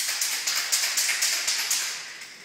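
Aerosol spray can hissing in a quick run of short bursts, about five a second, starting sharply and easing off slightly toward the end.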